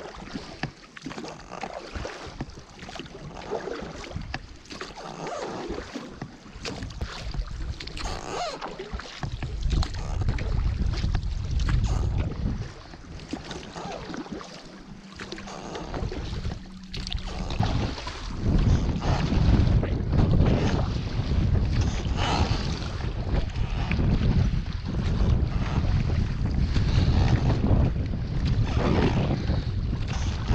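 Water sloshing and splashing around an inflatable dinghy's tubes as it moves slowly through calm water, with wind buffeting the microphone. The wind rumble grows heavier from about nine seconds in.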